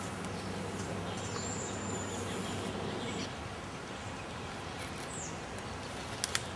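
Steady hiss of outdoor background noise, with a brief high, thin bird call about a second and a half in and another short chirp about five seconds in.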